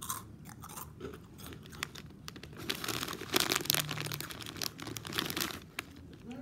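Close-miked crunching as a person bites and chews crisp food. The crunches come as a rapid, irregular crackle, loudest and densest in the middle and latter part.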